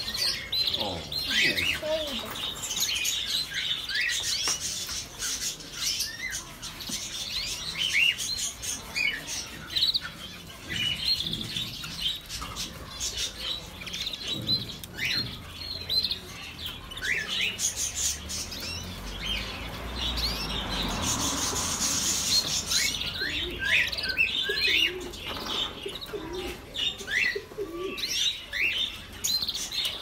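A caged kakariki parakeet chirping in quick, short calls again and again, with a few seconds of rustling wing flutter about two-thirds of the way through as the wet bird shakes out its feathers.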